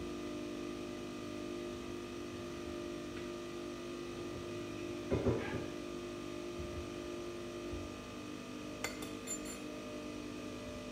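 Home espresso machine running with a steady hum while it brews, with a brief louder sound about halfway through and a few light clicks near the end.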